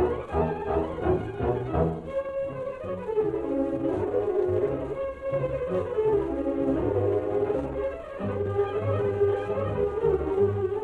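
Orchestral music led by bowed strings with some brass, in the dull, narrow sound of an old radio transcription recording.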